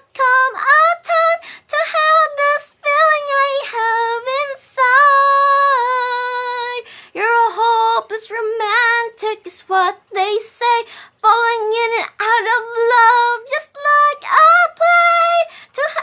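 A woman singing a slow love song unaccompanied, in phrases with a long held note about five seconds in.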